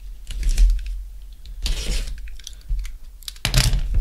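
Cardboard shipping case being handled and opened, its cut packing tape and flaps scraping and crackling in short bursts with scattered clicks, the loudest rustle near the end.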